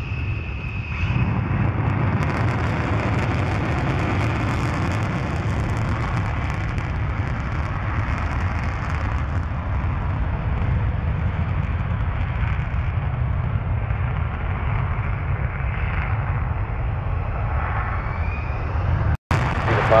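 Twin jet engines of an F-15 fighter at full afterburner on a take-off roll: a loud, steady rumble with crackle. A high whine is heard at the start, and the noise jumps louder about a second in. The sound cuts out for a moment near the end.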